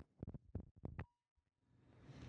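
Faint handling clicks from twisting the polar-pattern selector of a Shure KSM141 condenser microphone from cardioid to omni: about six small clicks within the first second, then near silence.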